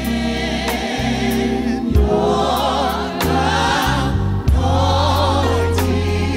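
A gospel mass choir singing full, wavering chords over an instrumental accompaniment with a steady low bass and regular drum-like hits. The voices swell into two held phrases, one about two seconds in and one about four and a half seconds in.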